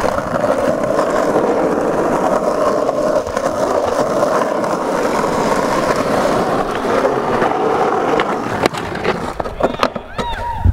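Skateboard wheels rolling over rough asphalt, a steady gritty rumble for most of the time, with a few sharp clacks near the end.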